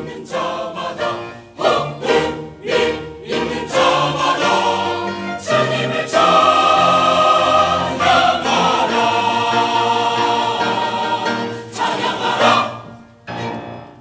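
A church choir sings with a string ensemble of violins and cellos in the final bars of a choral anthem. It starts with short, separated chords, then holds one long loud chord, and ends with a last short chord that dies away.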